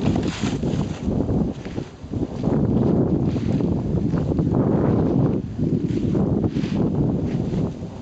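Wind buffeting the camera microphone, a loud, uneven low rumble that rises and falls, with a few brief brighter hissing gusts.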